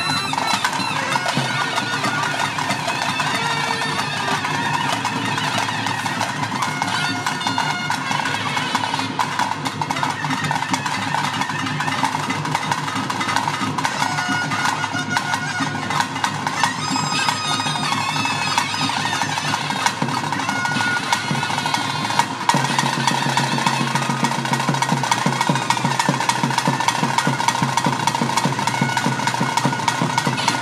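Traditional ritual band music: a reed pipe playing over a steady drone, with continuous drumming. A lower sustained tone joins about 22 seconds in.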